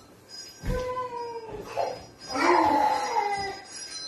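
Two drawn-out wordless vocal calls, each sliding down in pitch, the second louder and longer; a low thump comes with the start of the first.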